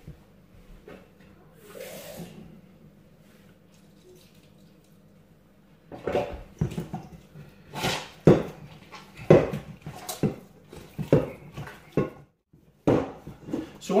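Hands working wet bread dough in a stainless steel mixing bowl: quiet at first, then from about halfway a run of irregular slaps and knocks as the dough is pressed and turned against the bowl.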